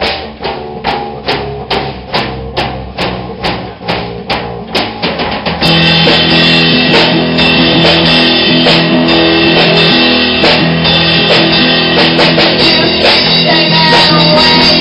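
Punk band playing live in a rehearsal room. For the first five and a half seconds a Pearl drum kit keeps a steady beat under bass guitar. Then electric guitar and the full band come in much louder and play on together.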